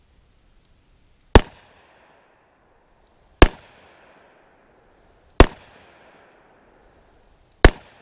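Four .38 Special +P revolver shots fired with Buffalo Bore 110-grain lead-free copper hollow-point loads, about two seconds apart. Each shot is sharp and loud and dies away in a short echo.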